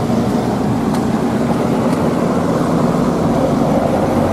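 A motor vehicle engine running at a steady low pitch, with the broad hiss of road traffic.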